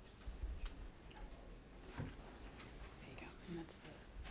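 Faint room noise with a low rumble and a few soft scattered clicks, and a brief low murmured voice near the end.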